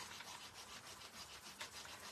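Faint, repeated rubbing as a hand presses down and rubs over the closed clear acetate lid of a stamp positioning tool, pushing the inked stamp onto textured card for a better impression.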